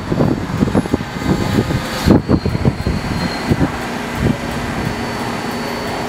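New York City Subway R160 train running along an elevated steel structure, its wheels knocking over rail joints in an uneven series of clacks for the first four seconds or so, then settling into a steadier running sound with a low hum.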